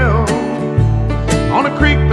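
Country band playing an instrumental passage of a song: a lead line with bending notes over a low bass line.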